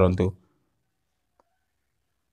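The tail of a spoken word, then near silence with a single very faint click about one and a half seconds in.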